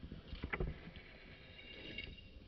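Footsteps crunching in snow, with a few sharp crunches about half a second in.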